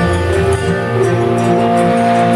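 Live band music: a female singer holds long notes over acoustic guitar, drums and a steady bass.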